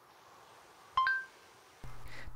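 Google voice search chime on an Android phone: two quick tones, the second higher, sounding as the phone stops listening and takes the spoken command.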